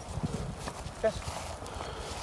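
Footsteps walking through low, leafy field crop: irregular soft thuds, with a brief high chirp about a second in.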